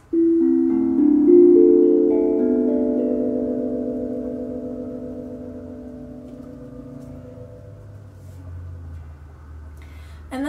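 A 12-inch mass-produced steel tongue drum struck with a mallet: a short run of about eight clear notes in quick succession, then left to ring and slowly fade out over several seconds.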